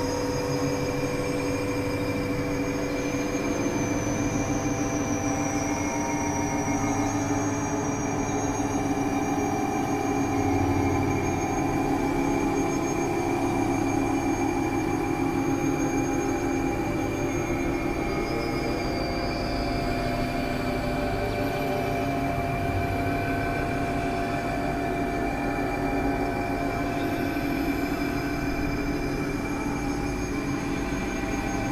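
Experimental synthesizer drone from a Novation Supernova II and Korg microKORG XL: dense layers of held tones over a noisy, industrial undertone, with slow gliding high pitches drifting above. It stays at an even loudness throughout.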